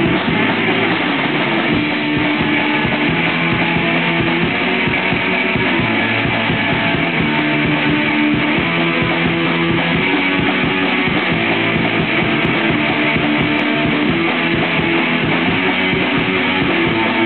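Live punk rock band playing: electric guitar, bass guitar and drum kit, loud and steady with no break.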